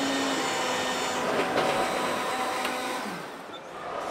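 Nescafé coffee machine running as it dispenses coffee into a cup: a steady mechanical hum that fades near the end.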